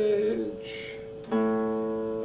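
Acoustic guitar strummed once just past halfway, the chord ringing on steadily. Before it, the end of a sung line bends and fades.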